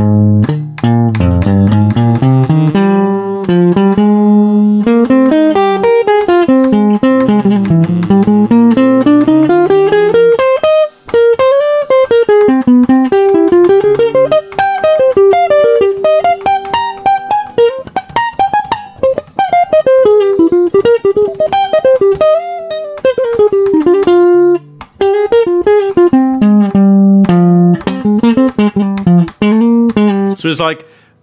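Archtop jazz guitar improvising fast single-note F minor lines that climb and descend across the neck, with a couple of short breaks between phrases.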